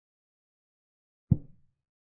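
A single short, low knock a little over a second in: a chess program's piece-move sound effect as a piece is played on the board. It dies away within about half a second.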